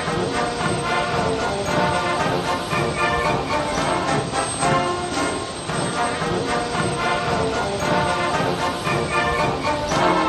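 Background music with sustained pitched notes, laid over the footage.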